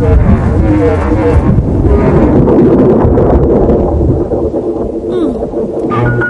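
A long, loud rumble of thunder from an approaching storm, with wavering music-like tones under it.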